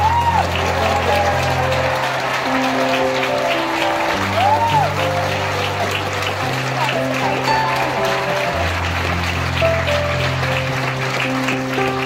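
Orchestra playing slow music of long held chords while a theatre audience applauds throughout, with two short rising-and-falling whistles, one at the start and one about four seconds in.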